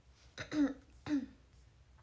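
A young woman laughing twice, two short laughs about half a second apart.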